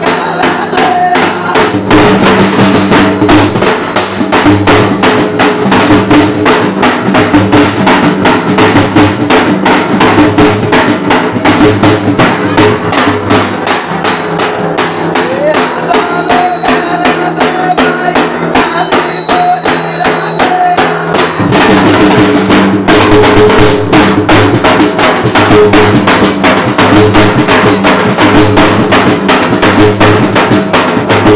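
Dafda frame drums beaten fast and steadily with sticks, a dense run of strokes that picks up about two seconds in and breaks briefly about two-thirds of the way through, with a held tune sounding over the beat.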